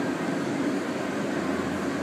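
Steady mechanical droning background noise, an even hum with no distinct events.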